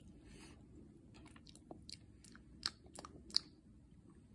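A person chewing a bite of smoked turkey: faint, scattered mouth clicks and smacks, with two sharper clicks near the end.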